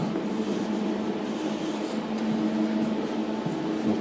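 A steady mechanical hum with a few faint clicks.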